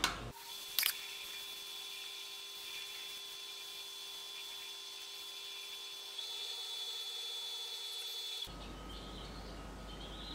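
Wood lathe running at steady speed with a thin, even whine, as abrasive paste is polished onto the spinning bottle stopper. There is a sharp click about a second in.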